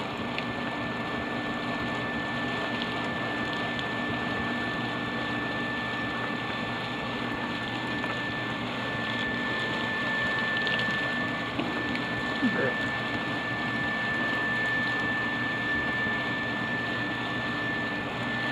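Loose-fill cellulose insulation blowing out of an insulation blower's corrugated hose: a steady rush of air and fiber with a constant high-pitched tone running through it.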